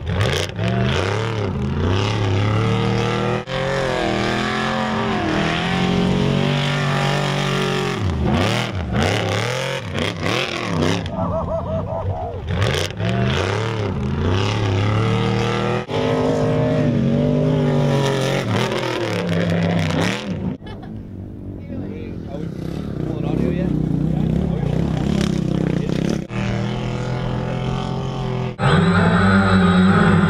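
Off-road trucks' engines revving and running in a run of short clips, with people's voices and shouts over them.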